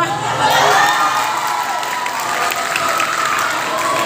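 A crowd of young people cheering and shouting, with some clapping, breaking out suddenly and staying loud.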